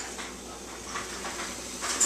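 Faint, steady fizzing hiss of baking soda reacting with vinegar in a plastic water bottle, the carbon dioxide filling the balloon stretched over its neck.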